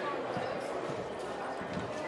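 Steady background hubbub of a casino floor, with faint voices in the distance.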